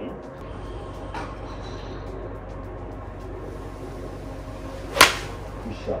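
A golf iron striking a ball: one sharp, crisp impact about five seconds in, the sound of a cleanly struck shot.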